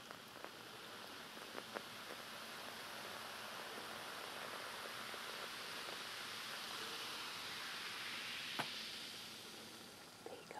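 A fizzy soft drink poured from a bottle into a cup: the pour and fizz swell into a steady hiss, then fade near the end. There are a few light clicks, with one sharp tap of bottle on cup just before the hiss dies away.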